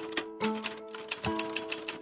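Typewriter key-click sound effect, about six quick clicks a second, over soft background music with held, plucked notes.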